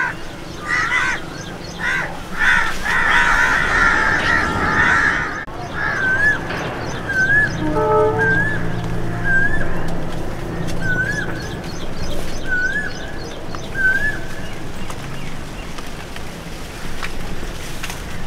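Birds calling: a dense run of calls for the first five seconds or so, then a short rising-and-falling note repeated about once a second until around fourteen seconds in.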